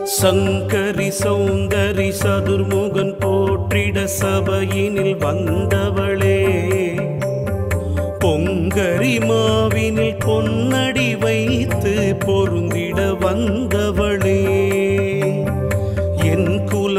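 Carnatic-style devotional music: a Devi stotram sung by women's voices over a steady drone and regular percussion, with ornamented melodic lines that waver in pitch.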